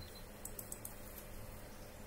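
A few faint, quick clicks from computer controls on a desk, clustered about half a second to a second in, with another near the end, over a low steady electrical hum.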